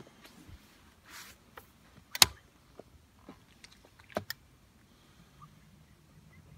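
Scattered sharp knocks and clicks of handling in a small boat, the loudest about two seconds in and a close pair about four seconds in, with a brief hiss just after the first second.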